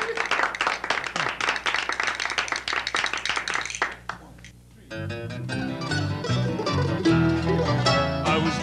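Applause for the first few seconds, then a brief lull, and about five seconds in an acoustic string band starts an instrumental country-bluegrass intro with banjo, acoustic guitars, mandolin and bass.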